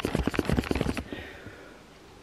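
Handling noise on the camera: a quick run of scratchy rubbing and knocking against its microphone as the lens is wiped with a cotton top to clear a blurry picture, dying away about a second in.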